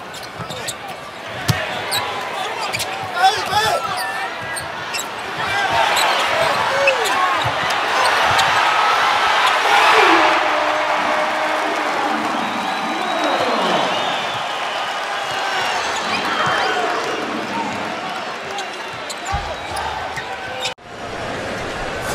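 Basketball game in an arena: the ball bounces on the hardwood court and the crowd noise swells to a loud cheer about ten seconds in, as a shot goes through the hoop. The sound breaks off abruptly shortly before the end.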